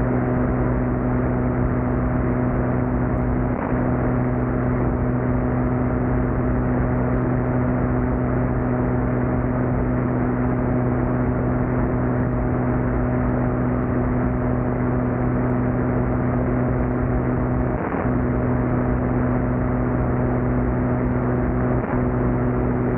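Steady drone of the Adam A500's twin piston engines and propellers in flight, a low hum of constant pitch over a noisy rush.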